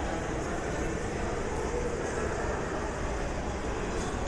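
Steady, even background noise of a large indoor hall, picked up by a phone microphone, with no distinct events.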